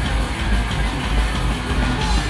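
Hardcore punk band playing live: distorted electric guitar, bass and drums in a dense, loud, unbroken wall of sound with a heavy low end.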